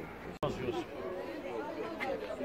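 Several people talking over one another at a market stall, an unclear babble of voices. The sound cuts out for an instant just under half a second in, at an edit.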